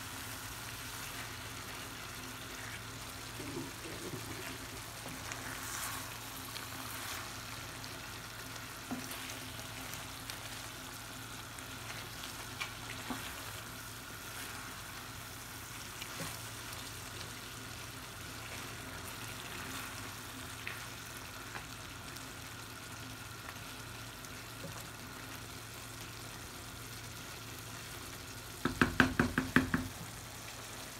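Prawn and potato curry sizzling in a frying pan on a gas hob while a wooden spoon stirs it, with scattered small scrapes and clicks over a steady low hum. Near the end, a quick run of loud knocks.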